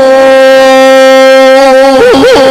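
A man's singing voice holding one long, very steady note with many overtones in a mournful Egyptian religious song, between ornamented phrases.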